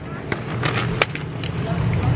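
Steady low rumble of a vehicle rolling over a gravel lot, with a few sharp clicks and faint voices.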